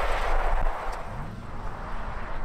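Rally-prepped Toyota Supra sliding past on a loose dirt road, with a loud rushing noise that fades as it goes by over a low engine rumble. The engine revs up briefly about halfway through.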